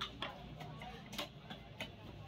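Heavy knife chopping fish pieces on a wooden log chopping block: a few sharp, irregularly spaced knocks, the strongest near the start and a little past the middle.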